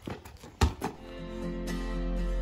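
A basketball hitting a concrete driveway twice in quick succession, then background music with sustained notes and a bass fading in about a second in and growing louder.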